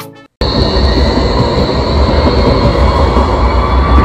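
A street tram passing close by, a loud steady rumble with a thin high squeal from its wheels on the rails, starting abruptly about half a second in.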